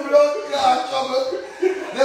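A man's voice chuckling and laughing loudly in short bursts, with no clear words.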